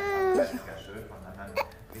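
A baby's voice: one high-pitched vocal sound held for about half a second at the start, followed by a short click about one and a half seconds in.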